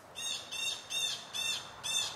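A bird calling repeatedly in a quick series of short, high calls, about three a second, close enough to interrupt the speaker.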